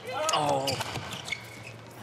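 Badminton rally: sharp racket strikes on the shuttlecock and players' footwork on the court, several hits in two seconds. A short drawn-out vocal exclamation comes in the first second.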